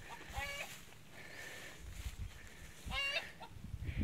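Two short bird calls, each a quick run of notes, about half a second in and again near three seconds, faint over a low rumble.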